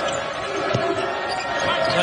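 Game audio of a basketball being dribbled on a hardwood court, a few short bounces over a steady din of arena crowd noise and voices.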